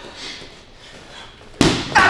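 A gloved punch lands on a super heavy leather punching bag with a single loud thud about one and a half seconds in, after a quiet stretch.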